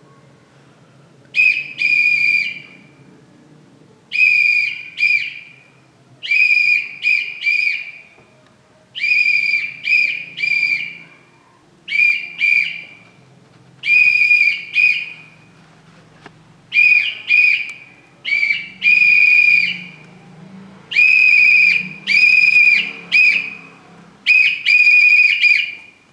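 A whistle blown in Morse code: about ten groups of short and long blasts on one steady high note, a group every two to three seconds.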